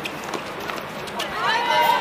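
Sharp knocks of a tennis ball off rackets and court during a doubles rally, then a high voice calls out loudly for most of a second near the end as the point is won.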